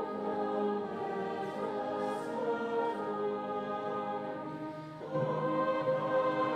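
Brass band accompanying a standing congregation singing a carol, in long held chords. The sound dips briefly about five seconds in, then the next phrase comes in louder.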